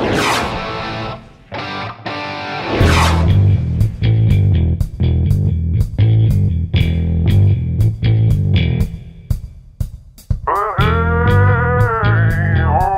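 Rock-style background music with electric guitar over a bass-heavy steady beat. It opens with two rising whoosh transition effects, the second about three seconds in, and a bending guitar line comes in near the end.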